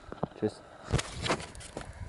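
Handling noise from a handheld camera being swung around: a few short, irregular thumps and rustles, with a brief vocal sound about half a second in.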